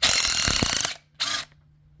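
Cordless impact wrench running in a loud burst of about a second, zipping a cylinder-head nut off a flathead V8's head stud, then a second, shorter burst a moment later.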